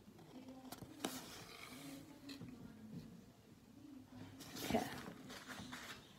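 Quiet room with faint handling of a paperback picture book: a few light clicks, then a louder paper rustle about four and a half seconds in as a page is turned.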